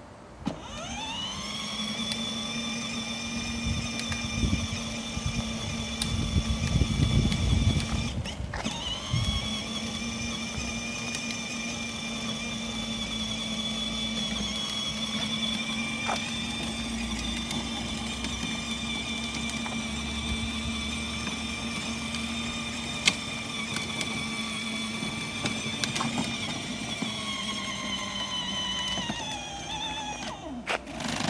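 Electric drive motors and gearbox of a battery-powered ride-on toy Audi R8 Spyder whining as it drives. The whine spins up within the first second, cuts out briefly around eight seconds before picking up again, and winds down near the end, with a low rumble loudest in the first several seconds.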